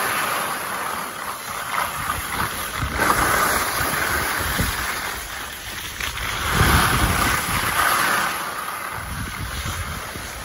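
Skis sliding and scraping over groomed, packed snow: a hiss that swells and fades several times. Wind buffets the microphone with low rumbles, strongest about two-thirds of the way through.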